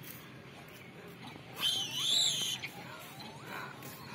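A young monkey's high-pitched, wavering squeal lasting about a second, near the middle, with softer wavering calls around it.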